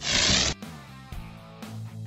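A short, noisy whoosh effect lasting about half a second, ending abruptly, then soft background music with low sustained notes.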